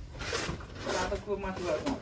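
A man talking quietly, with a short hissing noise about half a second in.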